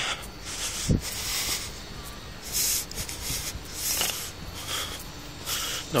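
Scratchy rubbing and handling noise on a handheld phone's microphone while walking, in irregular bursts about once a second, with a low thump about a second in.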